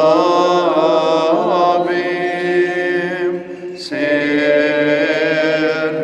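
A priest chanting a Byzantine-rite liturgy in long held notes. A short break for breath comes about three and a half seconds in, then the chant resumes.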